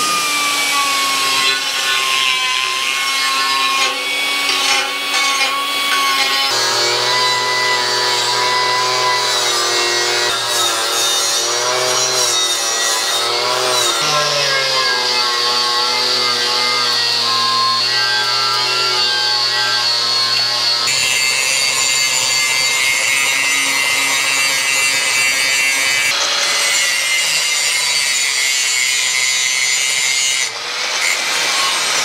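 Handheld electric grinder grinding painted steel plate, its motor whine rising and dipping as the disc bites and eases off. The grinding runs on without a break, changing tone a few times.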